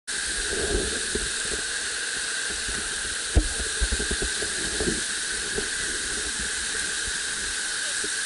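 Whitewater rapid rushing steadily close by, with a few scattered low knocks and bumps, the loudest about three and a half seconds in.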